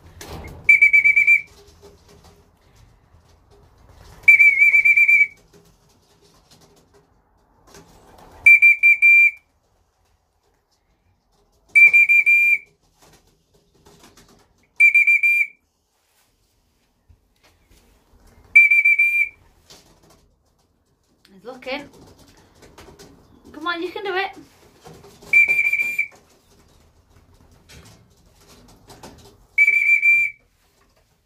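A whistle blown in short, steady blasts on one high note, eight times, about every three to four seconds with one longer gap. It is the signal calling racing pigeons back to the loft to come in through the trap.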